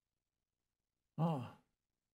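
A man's short voiced sigh about a second in, falling in pitch.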